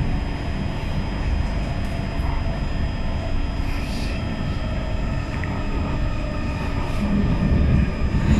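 Interior of an SMRT C151 metro train running along the track: a steady rumble of wheels on rail with a faint steady hum above it, growing a little louder near the end.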